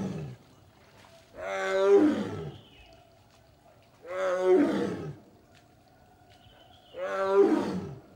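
Tiger roaring in a series of separate calls, each about a second long and spaced about three seconds apart: one fading out at the start, then three more.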